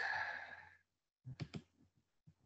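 A person's breathy exhale, like a sigh, fading out within the first second. About a second later come a few quiet clicks.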